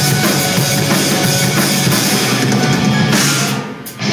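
Live rock band playing an instrumental passage, drum kit with bass drum and snare driving under guitars and keyboard, heard through a crowd-held recorder. Just before the end the sound drops away briefly, then the full band crashes back in.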